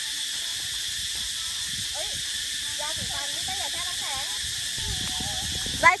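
A steady, high-pitched insect chorus, with faint conversation underneath. A loud voice breaks in right at the end.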